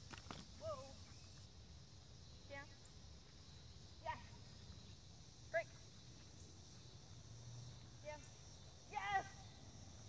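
A woman's voice giving short one-word cues to a running dog, one every second or two, the last one the loudest.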